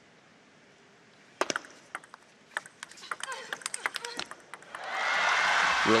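Table tennis rally: the ball clicks in a quick, irregular run of sharp taps off bats and table. Then crowd applause swells as the point ends.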